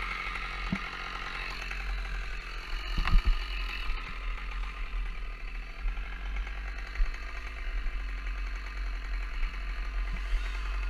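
Holzknecht HS 410 two-stroke chainsaw idling steadily between cuts, with a few knocks and clatters, the loudest about three seconds in.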